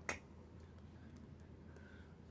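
A single sharp click right at the start, then quiet room tone with a faint steady low hum.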